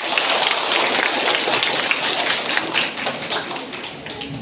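Audience applauding: a dense patter of many hands clapping that begins to die down near the end.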